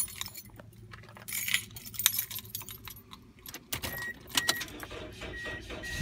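Keys jangling as the ignition key is worked, then, about four seconds in, the 2003 Toyota Echo's engine being cranked on a weak battery that reads 10.8 V, with a short electronic beep repeating. The engine catches right at the end.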